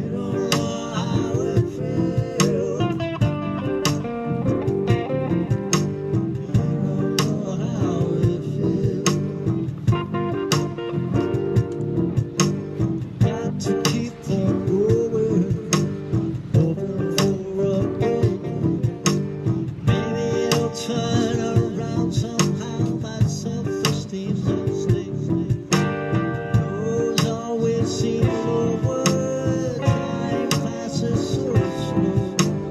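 Harley Benton Bigtone hollow-body electric guitar playing a blues groove through a looper, over a steady percussive beat.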